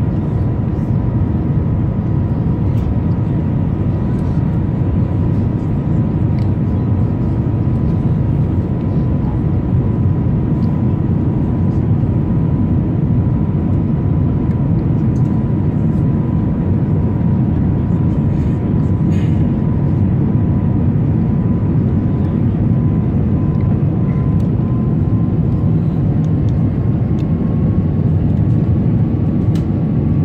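Jet airliner's turbofan engine heard from inside the cabin: a steady, loud rush of noise with a thin, steady whine above it.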